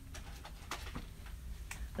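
A few faint, short clicks and taps of pens being searched through, over a steady low room hum.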